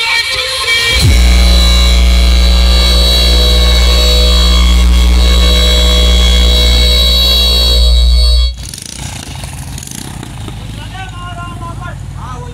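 DJ sound system holding one loud, bass-heavy electronic chord without change for about seven seconds, then cutting off abruptly; quieter outdoor background with voices follows.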